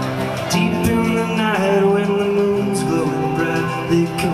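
Live folk-rock band playing an instrumental passage: strummed acoustic guitar and band under a harmonica melody, with a long held note that bends down and back up about one and a half seconds in.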